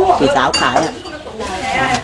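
A single sharp clink of tableware about half a second in, ringing briefly.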